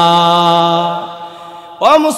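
A man's voice chanting one long held note at a steady pitch, in the sung delivery of a Bengali waz sermon. The note fades away after about a second, and a fresh note starts with a rising swoop near the end.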